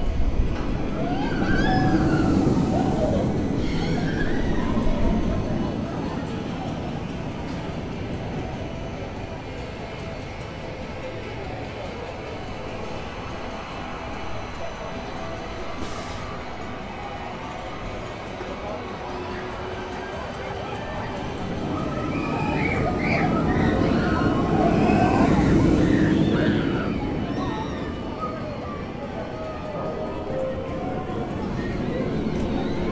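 A roller coaster train rumbling past on its steel track twice, once in the first few seconds and again about three-quarters of the way in, with riders' voices over each pass.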